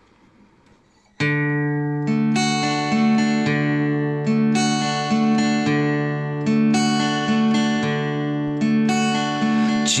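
Solo acoustic guitar intro: after about a second of near silence, chords start and are played in a steady repeating pattern.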